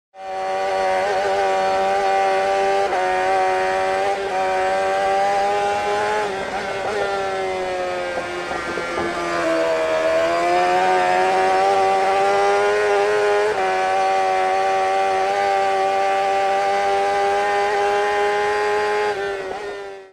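Motorcycle engine running at steady high revs, its pitch sagging between about eight and ten seconds in before climbing back, with a small step up about thirteen seconds in.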